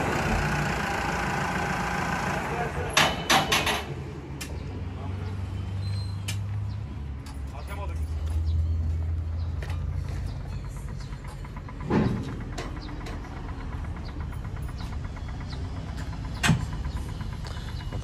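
Deutz-Fahr 6135 tractor's diesel engine idling with a steady low hum, with a few short knocks about three seconds in and again around twelve seconds.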